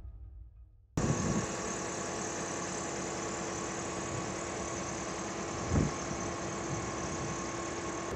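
Double-decker bus engine idling steadily, starting abruptly about a second in after a fading tail of music. A single short low thump comes about three-quarters of the way through.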